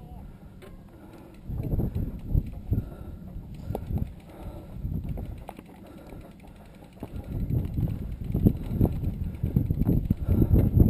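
Uneven low wind rumble on the camera microphone, with scattered knocks and rattles from a mountain bike being pushed up rough stone steps; the rumble grows louder about seven seconds in.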